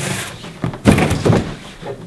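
Rigid cardboard gift box being handled and its lid worked open: cardboard scraping and sliding with a few dull knocks, the loudest about a second in.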